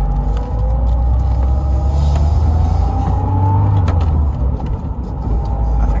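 Lada Niva heard from inside the cabin, pulling away from a standstill. A deep engine rumble comes in as it moves off, under a whine that climbs steadily in pitch. The sound eases briefly about five seconds in.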